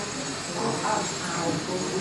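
Faint, indistinct speech under a steady hiss of room noise.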